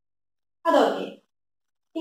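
A woman's voice: one short vocal sound, about half a second long, falling in pitch, a little before the middle; the rest is silence.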